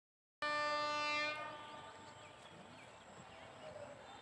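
Train horn giving one short, steady blast of about a second that cuts off, followed by birds chirping over quiet outdoor background.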